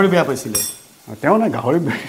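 Metal cookware clinking once about half a second in, a short high ring, between stretches of talk.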